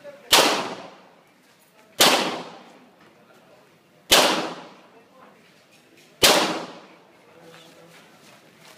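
Four handgun shots spaced about two seconds apart, each a sharp report followed by a short fading echo.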